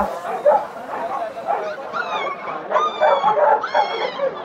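Caged puppies whimpering and yelping: three short, high-pitched whines in the second half, over the chatter of a crowd.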